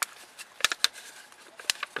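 A few sharp plastic clicks and crackles from a thin black seedling module tray being flexed and squeezed as basil plants are pushed out of their cells.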